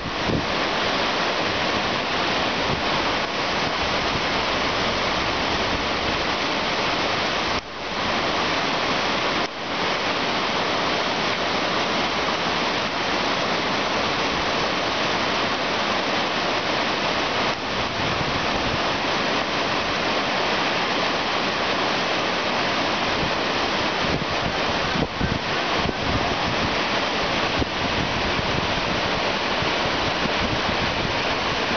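White-water river rapids rushing steadily, a dense, unbroken roar of water, with two brief dips in level about eight and ten seconds in.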